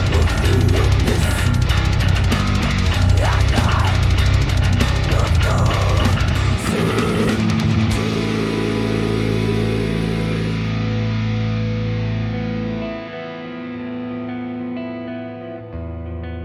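Heavy metal band track with a Dingwall NG2 fanned-fret bass, distorted guitars and drums playing at full force. About six and a half seconds in it thins into long held notes, the treble fades away, and near the end it settles into a quieter passage of sustained, ringing notes.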